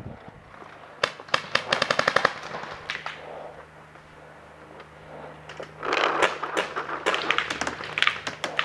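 Paintball markers firing in rapid bursts. A quick string of about a dozen shots comes about a second in, a few single shots follow, and a second, longer stretch of firing comes in the last couple of seconds.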